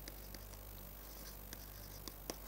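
Faint scratching and light taps of a stylus writing on a tablet PC screen, with a few small ticks as the pen touches down, over a steady low hum.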